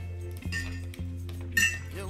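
Background music with a steady bass line, and about one and a half seconds in a single bright clink of a spoon against a glass jar as the yeast is about to be stirred into the grape must.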